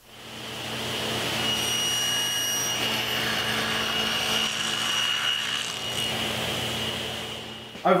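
Table saw running steadily with a high whine as its blade cuts a groove along a Baltic birch plywood drawer part. The sound swells up at the start and fades out near the end.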